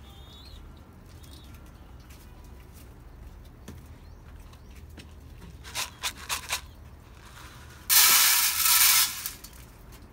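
Quiet background, then a few sharp clicks and, near the end, a loud rattling flurry about a second long from handling at a wooden, wire-mesh pigeon loft.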